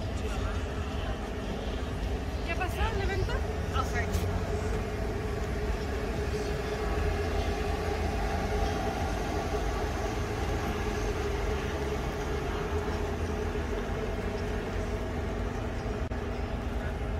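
Steady low rumble of outdoor city background noise with a faint steady hum, and a brief flurry of short high chirps about three seconds in.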